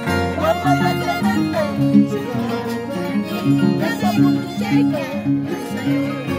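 Andean harp and violin playing a dance tune together: plucked harp bass notes under a bowed violin melody with vibrato.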